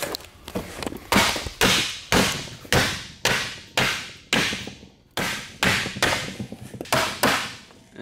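Hammer blows, about two a second, bending a sheet of metal over the edge of a wooden board used as a makeshift sheet-metal brake.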